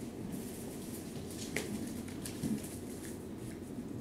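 Quiet room with a few faint taps and scuffles: a poodle puppy moving over a hard kitchen floor to a duck-wing retrieve dummy.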